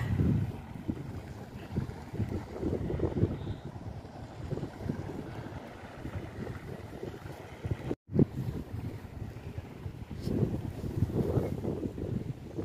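Wind buffeting the camera microphone: an uneven, gusting rumble that swells and eases, breaking off for an instant about eight seconds in.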